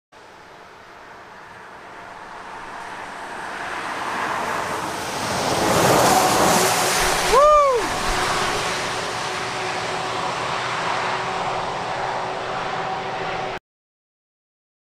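Steady outdoor rushing noise fades in over the first few seconds and then holds. A short tone rises and falls about halfway through, and faint steady hums run under the rest. The sound cuts off abruptly just before the end.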